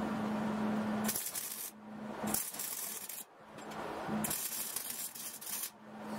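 MIG welder arc crackling in short stop-start runs while tack-welding a steel suspension bracket. Three bursts of bright sizzling, each about half a second to a second and a half long, alternate with a steady low hum.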